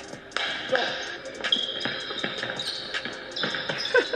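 A basketball being dribbled on an indoor gym floor, bouncing repeatedly.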